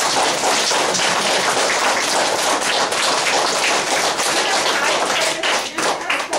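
A class of schoolchildren applauding: dense, steady clapping that dies away near the end.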